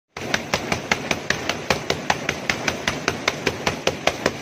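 Bare fists punching a banana tree trunk in a fast, even series of thuds, about five blows a second.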